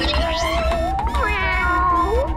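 Cartoon soundtrack: background music with a wavering, voice-like tone that glides steadily upward for about a second, then breaks and slides back down near the end.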